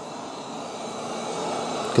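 Eufy RoboVac 25C robot vacuum running on carpet: a steady whir of its suction fan and brushes, growing a little louder toward the end.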